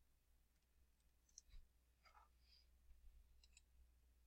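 Near silence: faint room tone with a low hum and a few faint clicks, a pair about a second and a half in and another pair near the end.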